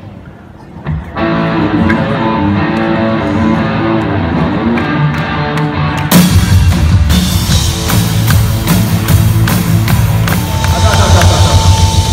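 Live band playing amplified music in a large arena. Sustained pitched notes begin about a second in, and drums and the full band come in abruptly about halfway through.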